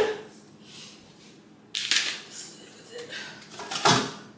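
Kitchen handling clatter as a plastic meal-prep container is taken to the microwave, with two sharp knocks about two seconds apart.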